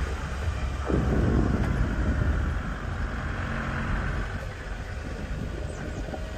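Steady low rumble of a moving vehicle running throughout.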